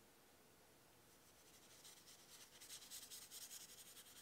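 Faint, scratchy strokes of a wet watercolour brush scrubbing back and forth across watercolour paper as paint is laid down. They begin about a second in and grow louder and quicker towards the end.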